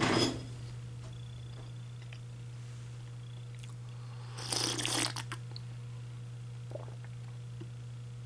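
A man slurping a sip of hot tea from a mug, a short noisy sip about halfway through, over a steady low hum.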